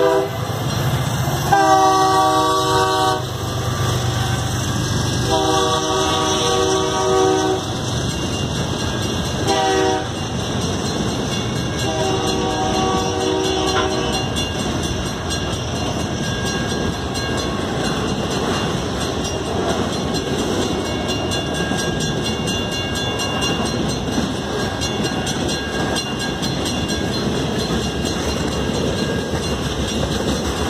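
Freight train's diesel locomotive horn sounding the grade-crossing signal: two long blasts, one short, one long, over the engine's rumble. After the last blast the freight cars roll past with a steady rumble and rattle of wheels on the rails.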